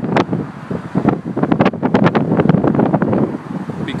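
Gusty wind buffeting a phone's microphone: a loud rumble broken by rapid, irregular thumps.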